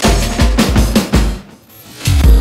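Instrumental electronic music: a drum break of heavy kick and snare hits that thins out to a quieter stretch in the second half.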